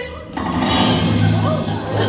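Theme-park dark ride's show soundtrack: music that swells in after a brief dip about half a second in, with a voice over it.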